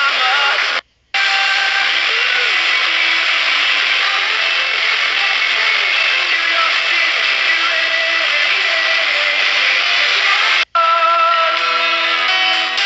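FM radio on a phone receiving stations through heavy static hiss, with music and singing faintly underneath. The audio cuts out briefly about a second in and again near the end as the tuner steps to a new frequency.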